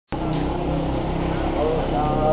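A steady low rumble with people's voices over it; the voices come in more clearly near the end.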